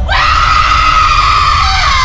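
A woman's long, high-pitched scream that starts suddenly and is held, over a low rumble.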